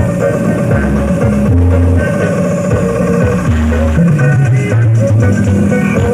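Loud music with a heavy bass line played through a truck-mounted mobile sound system, its deep bass notes changing about every half second under a busy guitar-like melody.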